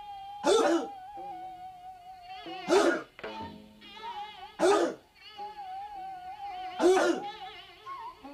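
A group of martial artists shouting sharp kihaps in unison, four short shouts about two seconds apart, over background music of long held, wavering notes.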